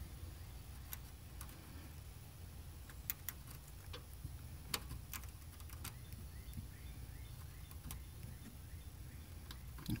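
Scattered light clicks and ticks of a wooden toothpick dipping in a small glass dish of acetone and touching the plastic case, over a steady low background hum.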